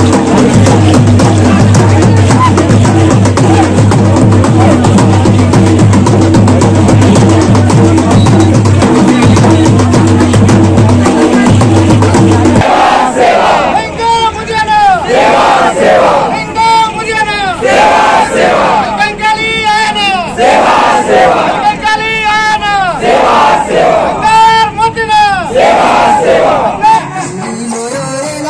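Adivasi folk dance troupe's drums beating fast and loud over a steady low hum. About halfway through the drums stop and the dancers' voices take over: a group chant of rising-and-falling cries, repeated roughly once a second.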